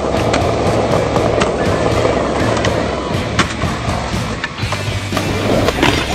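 Skateboard wheels rolling along concrete pavement, with several sharp clicks and clacks from the board, over music.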